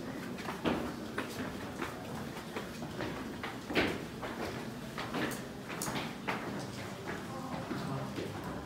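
Footsteps on stone stairs and flagstone floor, irregular knocks that echo in a vaulted stone chamber.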